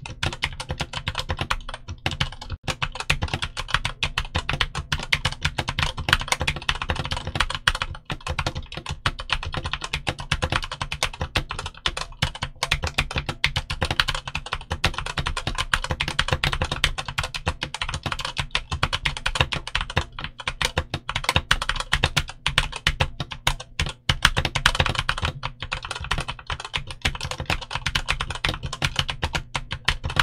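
Continuous fast typing on a stock Redragon K550 Yama full-size mechanical keyboard: Redragon Purple tactile switches on an aluminium plate, with ABS OEM-profile keycaps. A dense run of key clicks with a few brief pauses.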